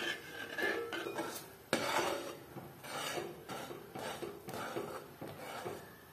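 Long metal spoon scraping and stirring a thick rice-flour, jaggery and coconut-milk halwa batter around a metal pot, in irregular strokes with a sharper knock against the pot a little under two seconds in. The batter is thickening and is stirred without stopping so it doesn't catch on the bottom.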